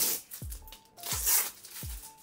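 Protective plastic film being peeled off a lightsaber's polycarbonate blade tube in ripping strokes, one at the start and a louder one about a second in. Background music with falling bass notes plays underneath.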